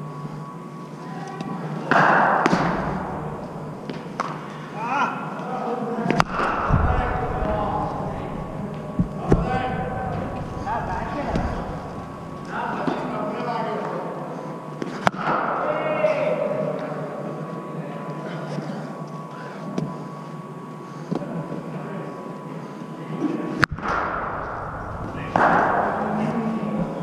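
Scattered sharp knocks of cricket balls off bats and into the netting, a few seconds apart, over a hubbub of voices in a large indoor practice hall.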